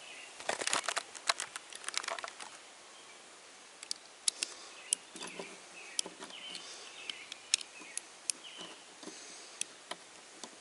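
Screwdriver turning the screws of a two-sided metal hose clamp on a hose-end fitting: a run of scraping and sharp metal clicks in the first two seconds or so, then scattered single clicks as the screws are snugged up.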